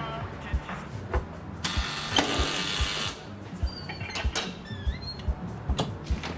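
Electric door-release buzzer of an entry-phone sounding for about a second and a half, unlocking the street door. Then come clicks and short high squeaks as the door is opened, over music with a slow, low pulse.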